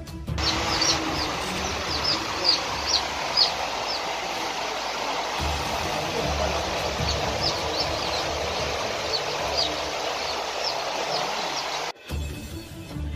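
Newly hatched chicks peeping: many short, high, falling cheeps over a dense, steady background din.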